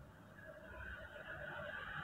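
Faint hiss that starts about half a second in and slowly grows, as a shorted IC on an LED TV mainboard is burnt out by current from a 6-volt battery held on the 19 V supply line, the sign that the IC is the shorted part.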